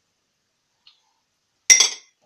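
Brief clink of kitchenware, a few quick ringing knocks close together about one and a half seconds in; the rest is near silence.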